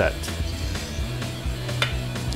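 Background music with a steady bass line. Over it, light metallic clinks from a wire whisk against a stainless steel mixing bowl as custard is poured, with one sharper click near the end.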